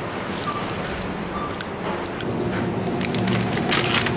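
Shop-floor background noise with plastic handling: a blue plastic shopping basket lifted off a stack, then scattered clicks and rustles, busiest near the end, as groceries in packaging are handled in the basket.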